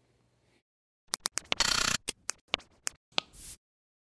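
A quick, irregular run of sharp mechanical clicks, with a short scratchy rasp in the middle and a softer hiss near the end.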